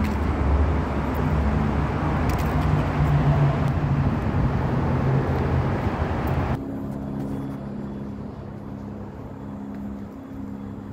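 Road traffic passing on a busy street: engines and tyres with a low engine hum. About two-thirds of the way through it cuts off suddenly to a much quieter street background with a faint steady hum.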